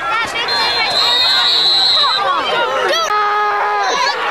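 Spectators' voices and shouts around a football field. A referee's whistle sounds one steady, high blast of about a second and a half, early on, blowing the play dead after a tackle. Near the end there is a held, steady note of under a second.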